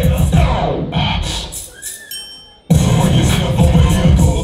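Hip-hop dance track playing over the hall's speakers. About a second in, the bass drops out for a short break that fades almost to nothing. Near three seconds in, the full beat cuts back in loudly.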